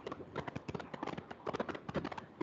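Chalk knocking and scraping against a chalkboard as lines are drawn, heard as a fast, irregular run of sharp clicks.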